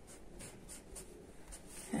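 Tailor's chalk drawn across woollen fabric along a tape measure: several short, faint scratching strokes as a cutting line is marked.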